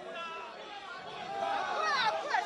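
Several voices talking over one another in a large hall, faint at first and growing louder toward the end.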